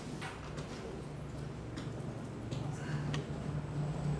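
Quiet room tone in a meeting hall: a steady low hum with a few faint, scattered clicks and knocks.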